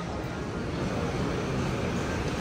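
Steady low rumble of busy indoor shop ambience, with no single distinct event standing out.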